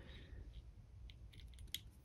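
Near silence with a few faint clicks and ticks from hands handling fly-tying tools at the vise while dubbing is wrapped onto the hook.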